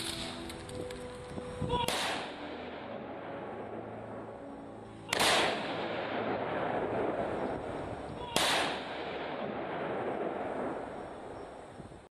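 Background music with three loud, sudden bangs about three seconds apart, each dying away in a long echo; the second and third are the loudest.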